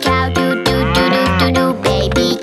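A cow's moo, one long call that rises and then falls in pitch, over upbeat children's music with a steady beat.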